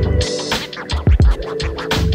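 Background music with a steady electronic beat: deep kick drums that drop in pitch, sharp high percussion and sustained synth notes.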